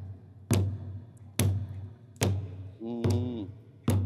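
Four sharp percussive knocks at an even beat, a little under a second apart, keeping time for a nang yai shadow-puppet dance move, with a short pitched note about three seconds in.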